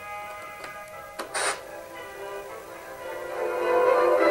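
Music from the Wallace & Gromit talking radio alarm clock's small speaker, with a click and a brief burst of hiss about a second and a half in, then the music swelling louder near the end.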